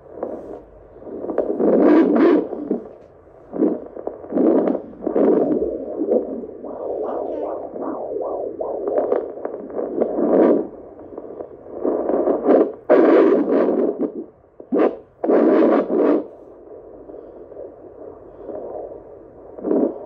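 Handheld fetal Doppler's speaker giving a low, muffled whooshing that swells and fades in uneven surges as the probe is moved over the gelled belly, listening for the baby's heartbeat.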